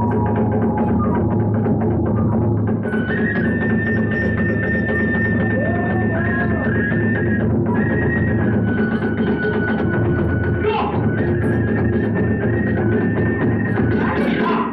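Iwami kagura hayashi, the live accompaniment for kagura dance: a bamboo flute holding long, high notes over fast, continuous drumming.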